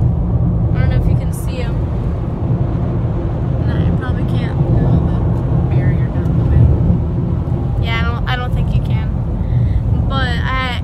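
Steady low road and engine rumble heard inside a car's cabin while driving on a highway, with faint snatches of voices now and then.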